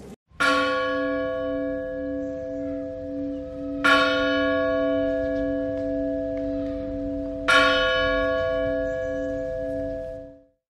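A large church bell struck three times, about three and a half seconds apart, each stroke ringing on long.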